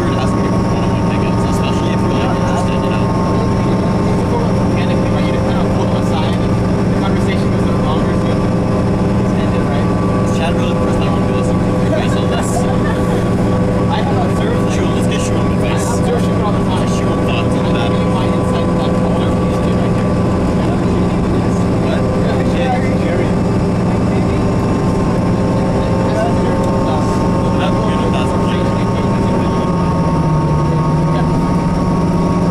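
Cabin sound of a 2003 New Flyer DE40LF diesel-electric hybrid bus (Cummins ISB diesel with Allison EP40 hybrid drive) cruising at freeway speed. It is a steady drone with a constant whine above it and light rattles. Right at the end the drone drops in pitch.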